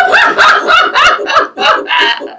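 Women laughing hard and loudly, in quick repeated whoops of rising pitch.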